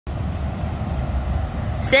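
UPS package delivery truck driving slowly past at close range, its engine and tyres a steady low rumble.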